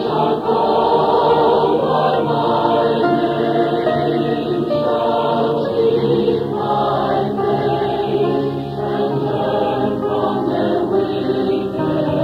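Adult church choir singing sustained chords.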